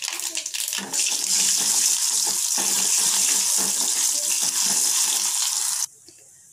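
Hot oil sizzling in a steel kadai as mustard seeds and chana dal fry for a tempering, the mustard seeds spluttering with fine crackles. The sizzle grows louder about a second in and cuts off suddenly just before the end.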